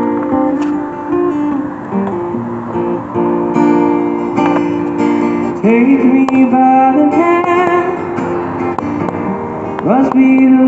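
Live acoustic guitar music, the steel-string acoustic guitar of a folk singer-songwriter being played through a small amplified setup, with a few rising pitch slides around six seconds in and near the end.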